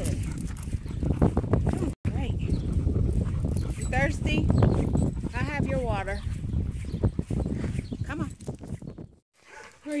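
Steady rumbling noise on a handheld phone's microphone during a walk. There are a few short voice-like sounds in the middle, and the sound drops out briefly about two seconds in and again just before the end.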